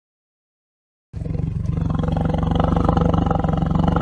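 The built-in tiger roar sound effect of an augmented-reality 3D tiger model. It is one long, low roar that starts about a second in and cuts off abruptly near the end.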